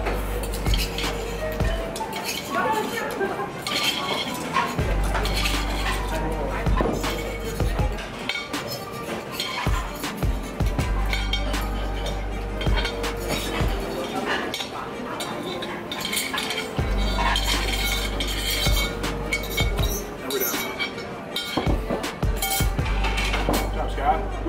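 Utensils clinking and scraping against large ramen bowls in repeated short clicks. Background music with a deep bass line plays throughout, dropping out briefly a few times.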